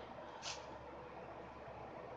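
Quiet room tone: a steady faint hiss with one brief soft rustle about half a second in.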